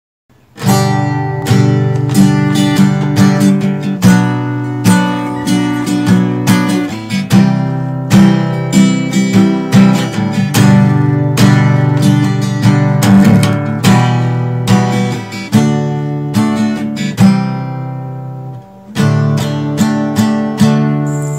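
Acoustic guitar strumming chords, the song's instrumental introduction. It starts about half a second in and has a brief drop-out shortly before the end.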